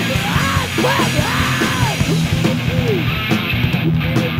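Live punk rock band playing loud: electric guitar, bass guitar and drums, with swooping tones that rise and fall about twice a second over the beat.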